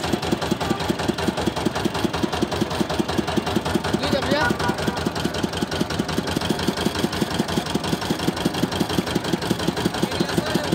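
Small stationary engine driving a sugarcane juice crusher, running steadily with a rapid, even chugging knock.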